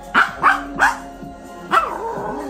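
A Maltese dog 'singing' along to music: four short high yips, each sliding down in pitch, three in quick succession and one more near the end.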